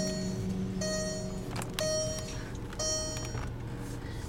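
Car's electronic warning chime, a single bright tone repeating about once a second in the parked car. A low steady hum underneath stops about a second and a half in.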